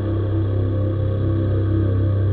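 Ambient background music: a sustained synth pad of held notes over a deep steady drone.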